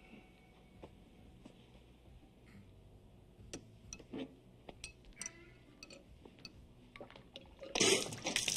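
A few seconds of quiet kitchen sounds with small clicks, then near the end a sudden loud spluttering spray as a mouthful of bourbon is spat out.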